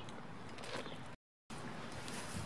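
Faint outdoor background noise with a few soft handling ticks, broken by a short gap of total silence a little past one second in where the recording is cut.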